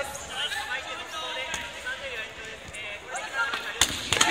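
Busy sports hall: overlapping voices and shouts from around the floor, with sharp smacks of air-filled chanbara swords striking in the matches, the loudest just before the end.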